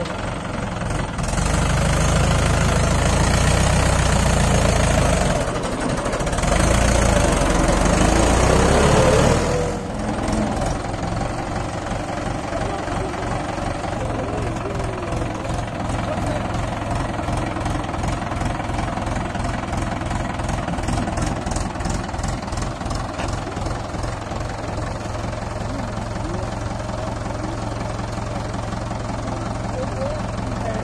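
Diesel tractor engine, a Mahindra 575 DI stuck in mud, revving hard under load for about eight seconds with a short dip in the middle as it works its way out of the rut, then settling to a steady, lower run.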